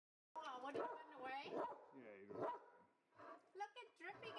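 A dog barking, with a person's voice mixed in.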